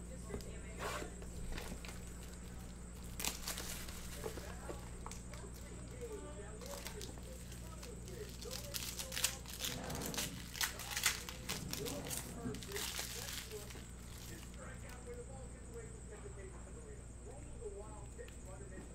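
Foil trading-card pack wrappers crinkling and tearing as packs are handled and opened, in bursts of crackles, busiest near the middle, over a faint steady hum.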